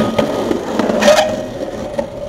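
Skateboard on granite steps: a sharp clack of the board hitting the stone at the start, then the board scraping along the stone ledge, loudest about a second in.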